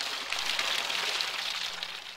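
Water gushing out of the lower outlet of a Ford Model A radiator and splashing onto grass, a steady rushing hiss as the radiator is drained in a timed flow test. The flow tapers off near the end.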